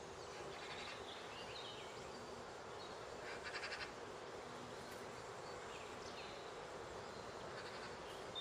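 Small songbirds calling over a steady background hiss: a few short, high chirps and one brief, rapid trill about three and a half seconds in, the loudest call.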